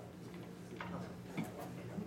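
A few scattered sharp clicks over a steady low hum.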